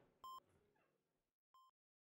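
Two short electronic beeps of a hospital patient monitor, about a second and a quarter apart, the second fainter. The sound then cuts to silence.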